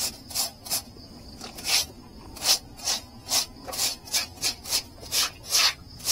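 Short stiff broom scrubbing a wet concrete pig-pen floor in quick repeated scratchy strokes, about two a second, with a brief pause about a second in.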